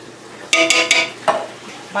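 Tin can of beans in tomato sauce knocked against the rim of an aluminium pressure-canner pot as the beans are emptied out: a cluster of sharp metal clicks and scraping about half a second in, then a single knock a little past a second.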